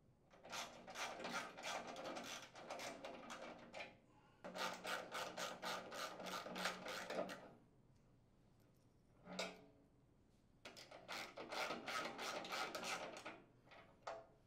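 Socket ratchet clicking in quick, even runs as it unthreads a small mounting screw: three runs of a few seconds each, with a short burst between the last two.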